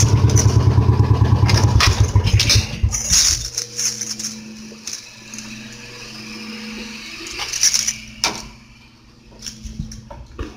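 Small engine of a utility vehicle idling with a fast, even low putter, then switched off about three seconds in. A faint steady hum and a few knocks follow.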